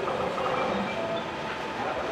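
Steady background noise with faint voices under it, in a lull between speakers.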